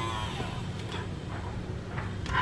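Small battery-powered one-touch can opener running steadily as it cuts around the rim of a can, with a low hum and faint ticks. It is running slowly because its battery is going dead.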